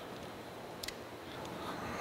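Low, steady workshop room tone with one faint click a little under a second in, as a 10-24 hand tap in a T-handle wrench is backed out of a freshly tapped hole in a cast-iron casting.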